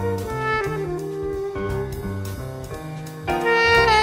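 Tenor saxophone playing held jazz notes over a backing track with a stepping bass line. About three seconds in, a louder, higher note comes in and wavers in pitch.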